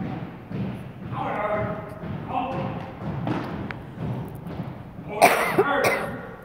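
Voices echoing in a large gym, some held out, over the thuds of a color guard's marching feet on a hardwood floor. A loud sudden noise comes about five seconds in.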